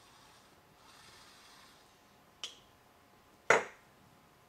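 Drink can held in a robot arm's gripper set down on a wooden tabletop: a light click about two and a half seconds in, then a single louder knock near the end.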